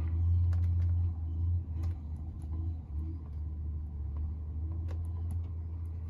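A farm machine's engine idling: a steady low hum, slightly louder in the first second or so, with a few faint clicks over it.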